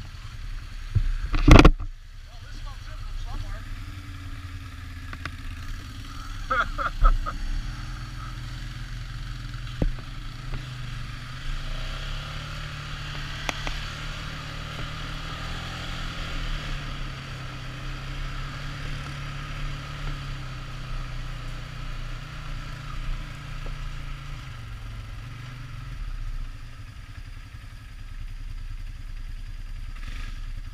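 ATV engine running under way on a rough dirt trail. Its pitch rises about ten seconds in and drops back near the end. A loud sharp knock comes about a second and a half in.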